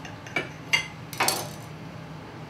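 Kitchen knife cutting a sandwich in half on a ceramic plate, the blade clicking and scraping against the plate: three short clicks, then a longer scrape a little past halfway.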